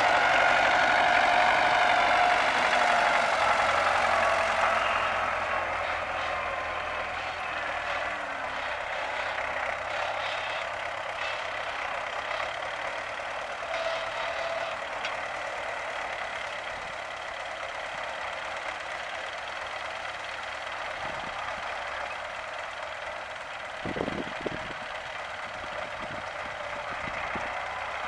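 MTZ-80 tractor's four-cylinder diesel running under load as it works its front loader, loudest in the first few seconds, then fainter and steady as it moves away. A couple of short knocks near the end.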